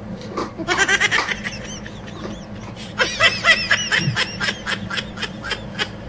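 A person laughing in high-pitched, rapid giggles: a short burst about half a second in, then a longer fit from about three seconds in that trails off near the end.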